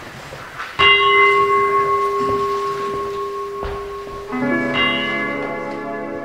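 A bell hung in a round stand is struck once with a mallet and rings on as a clear, steady tone, fading slowly over a few seconds. Music comes in about four seconds in.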